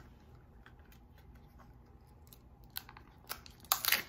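A small printed wrapper being peeled off a miniature toy item by hand: quiet rustling at first, then a quick run of sharp crinkles and crackles near the end, loudest just before it stops.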